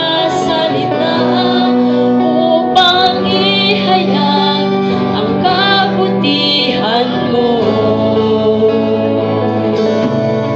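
A woman singing a Tagalog worship song into a microphone, holding long notes with vibrato, backed by a live band of electric guitar and electric bass.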